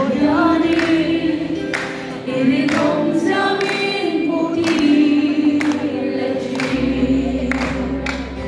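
A woman singing a Mizo gospel song live into a microphone through a PA, with music behind her. A deep bass note comes in near the end.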